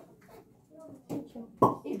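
Quiet room with faint voices in the background, then a person speaking close to the microphone near the end.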